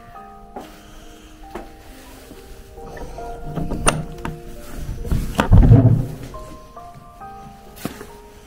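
Slow background music of held notes, with a heavy old wooden church door being pushed open partway through: two low thuds, the louder about five and a half seconds in.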